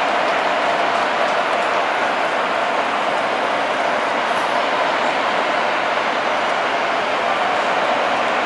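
Steady ballpark crowd ambience: an even wash of crowd noise with no single event standing out.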